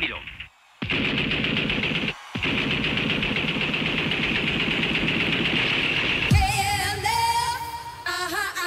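Machine-gun fire sound effect in a long rapid burst, broken briefly about two seconds in, as part of a recorded dance track. A moment of voice comes just before it, and near the end the electronic music starts with a low falling sweep and synth notes.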